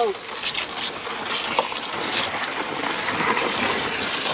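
Water from a garden hose spray nozzle rushing into a plastic bucket of ice, a steady splashing as the bucket fills with water.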